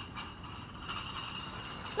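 Steady low hum of city street traffic.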